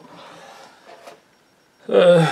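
A pause in a man's talk: about a second of faint noise, then near silence, ending with the start of a hesitant 'yy'.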